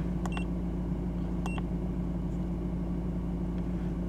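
Two short electronic beeps about a second apart from an iCarsoft VAG II handheld scan tool as its buttons are pressed to clear the ABS fault memory, over the steady low hum of the Audi A4's engine idling.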